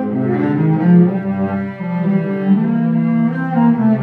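A cello bowed in a slow classical piece, a steady line of sustained notes that change every half second or so.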